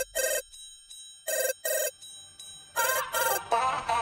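Telephone ringing with a double ring, heard three times about a second and a half apart, as a sound effect in a song's backing track.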